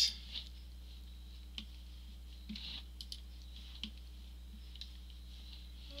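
A few faint, scattered clicks of a computer mouse and keyboard over a steady low electrical hum.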